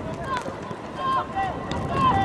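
Several short, high-pitched shouts from teenage boys calling out across an outdoor football pitch during play, in quick bursts about a second in and again near the end.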